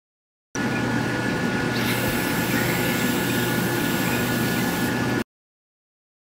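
RUPES electric polisher with a yellow foam pad running steadily: a motor hum under a high whine, starting and stopping abruptly. Its hiss brightens a little just under two seconds in.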